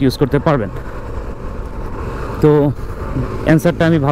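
A man talking, with the steady engine and road noise of a motorcycle being ridden in traffic filling the pause in the middle.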